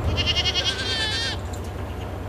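A goat bleating once, a high, quavering call lasting just over a second.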